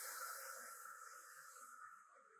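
A woman's long, slow exhale through the mouth, an airy breath that fades gradually.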